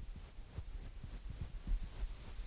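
Faint, irregular low thuds, several a second, over a low steady rumble, with no speech.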